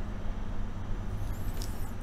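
Room tone between sentences: a steady low hum under a faint even background noise, with a brief faint hiss near the end.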